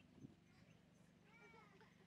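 Near silence: faint outdoor background. Near the end there is a faint short call whose pitch curves, too faint to name.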